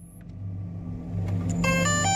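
Logo sound effect for the DJI Mavic: a low rumbling whoosh that swells louder, with a short run of clear electronic chime notes stepping in pitch near the end.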